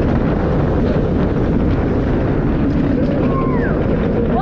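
Rush of wind over the microphone and the rumble of a B&M floorless coaster train running fast along its steel track, steady and loud, with a brief rider's voice near the end.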